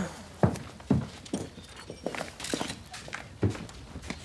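Footsteps on the wooden floorboards of a cabin: hollow knocks about half a second apart, a pause, then another step near the end.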